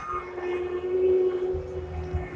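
Steady hum of a nearby motor vehicle's engine over street noise, with a low rumble that swells about one and a half seconds in.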